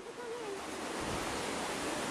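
Steady rushing of a mountain river, an even noise without pauses. A short wavering voice-like tone trails off in the first half second.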